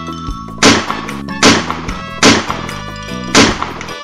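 Four loud, sharp pistol-shot sound effects, spaced just under a second apart, over light background music.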